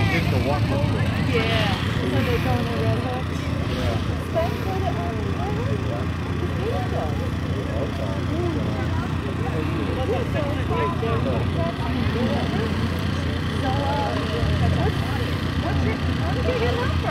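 Spectators talking over one another, no single voice clear, over the steady low running of car engines on the field.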